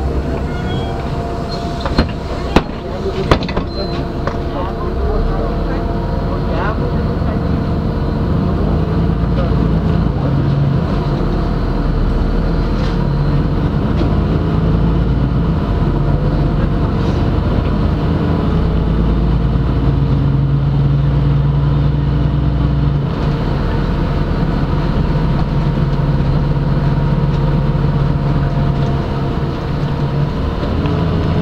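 Inside a LiAZ-5292.65 city bus under way: the diesel engine running and pulling, with road and tyre noise, growing louder over the first several seconds as the bus gathers speed. A few sharp knocks sound around two to three seconds in.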